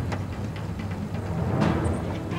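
Background film score with low, drum-like percussion.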